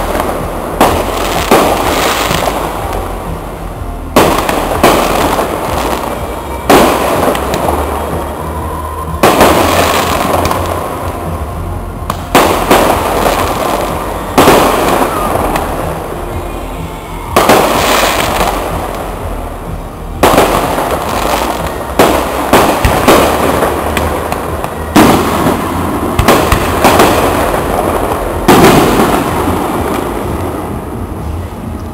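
Fireworks display: aerial shells bursting one after another, a loud bang every one to three seconds, each followed by a fading echo.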